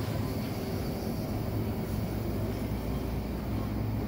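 Shopping cart rolling across a store floor, a steady low rumble with a continuous light rattle, over the hum of the store.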